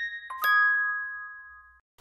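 Closing notes of a short chime jingle: bell-like struck tones, the last one struck a moment in and ringing out, fading away to silence.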